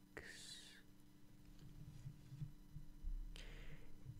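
A man's soft breaths close to a condenser microphone: one short breath just after the start and another shortly before the end, over a faint steady low hum.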